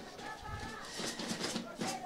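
Faint open-air ambience at a football field, with distant, indistinct voices.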